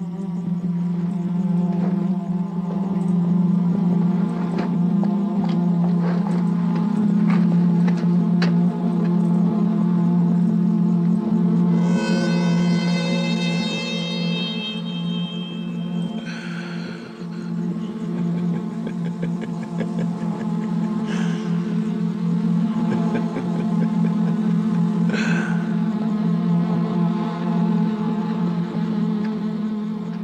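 Eerie film score music built on a sustained buzzing drone. A bright high tone enters about twelve seconds in and slides slightly downward, and a few short accents come later.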